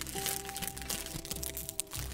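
Soft background music with long held notes, over the light crackle of a plastic snack-cake wrapper being handled.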